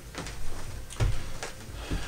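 A few light knocks and clicks of a flathead screwdriver, with a stripped wire wrapped around it, being handled and set down.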